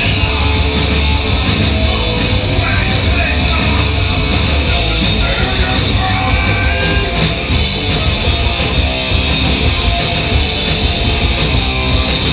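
A punk rock band playing live at full volume: distorted electric guitar, bass and drums with frequent cymbal and snare hits.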